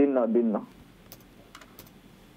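A few scattered keystrokes on a computer keyboard, single clicks with short gaps between them, after a brief bit of a man's speech.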